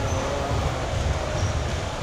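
Steady low rumble of background room noise, with a faint voice briefly about half a second in.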